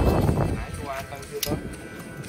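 Lump charcoal knocking against metal tongs and the steel grill box as it is moved, with one sharp clack about one and a half seconds in.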